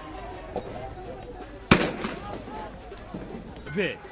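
Street-clash field audio: faint voices and street noise, broken a little before halfway by one sharp, loud bang.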